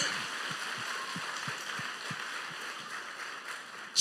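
A congregation applauding, a steady wash of clapping that fades slowly.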